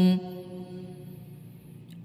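Quran recitation: the reciter's long held note at the end of a verse stops just after the start, then only a faint reverberant tail and a pause remain before the next phrase.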